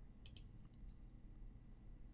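Near silence: faint room tone with a few faint, sharp clicks in the first second.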